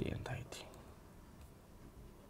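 A man's brief breathy mutter, too soft to be a word, in the first half-second, then quiet room tone with one faint click.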